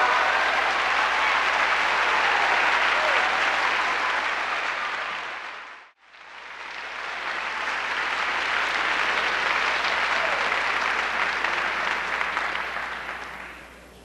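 Large audience applauding in a concert hall. The applause fades out about six seconds in, fades back in, and dies away near the end.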